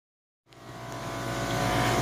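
Steady mechanical drone with a low hum, fading in about half a second in and growing louder.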